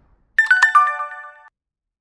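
Short chime sound effect for an animated subscribe button: a few clicks and a quick run of falling bell-like notes, starting about half a second in and lasting about a second.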